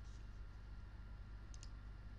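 A quick pair of faint computer mouse clicks about one and a half seconds in, over a low steady hum of microphone background noise.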